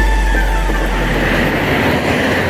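Road traffic: a vehicle passing close by on the road, with a steady low engine rumble and tyre noise. A faint tone slides down in pitch as it goes past.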